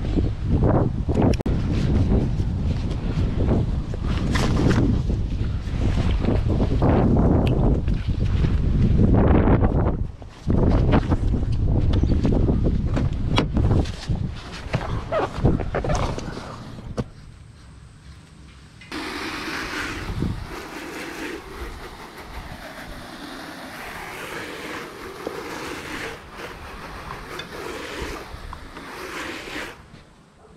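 Wind buffeting the action-camera microphone, a loud irregular rumble with crackling handling noise for most of the first half. Then it drops to a quieter, steady hiss for the rest.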